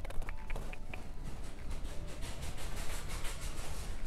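Rubbing and clicking handling noise on a handheld phone microphone over a steady low rumble of store ambience, with a few short faint tones in the first second.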